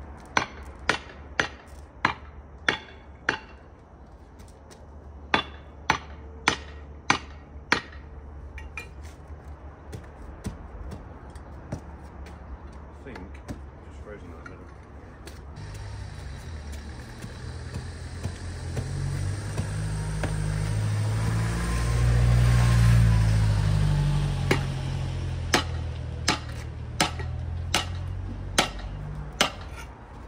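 Sharp metal-on-concrete strikes of a pickaxe knocking old concrete kerbs loose, in runs of blows about half a second apart near the start and again near the end. In between, a passing vehicle's engine rumble swells and fades over several seconds.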